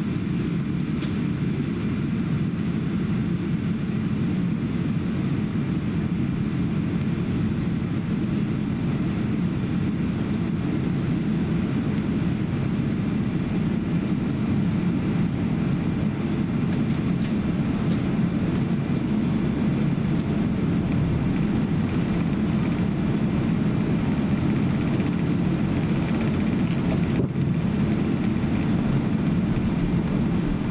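Steady low cabin rumble of a Boeing 777-200 taxiing, heard from inside the passenger cabin: engine and airframe noise at taxi power.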